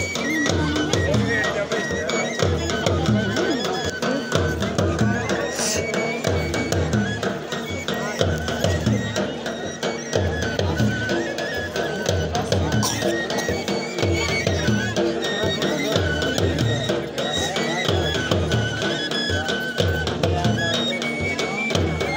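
Churahi folk dance music: drums beating steadily under a high wind-instrument melody of held notes, with a crowd's voices mixed in.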